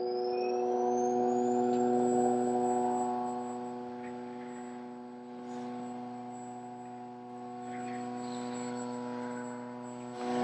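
Human Tecar Synergy VISS handy mechano-acoustic vibration unit running its 120 Hz programme: a steady, somewhat noisy buzz from the vibrating air column in the tubes that drive the pods strapped on the thigh. A faint high whine rises over the first two seconds and then holds steady.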